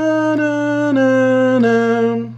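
French horn playing a slow, smoothly connected descending scale: four sustained notes, each a step lower than the one before.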